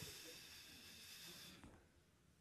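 Near silence: a faint, even hiss that fades out about one and a half seconds in.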